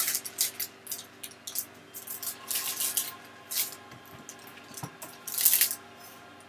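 Rustling, crinkling and light clicks of things being handled close to the microphone, coming in short irregular bursts, with a louder rustle near the end.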